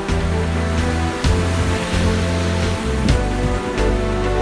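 Background music with long held low notes and a few sharp percussive hits, with the rush of surf breaking on rocks faintly underneath.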